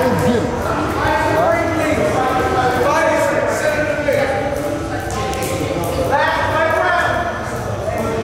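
Indistinct voices of several people talking in a large, echoing gym hall.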